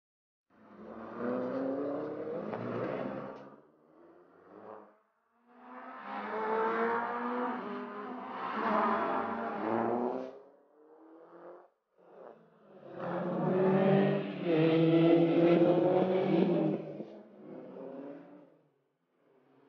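Mini Cooper S turbo rally car engines revving hard under acceleration, in three separate passes a few seconds each with short gaps between. The pitch climbs in each pass, and the last pass is the loudest.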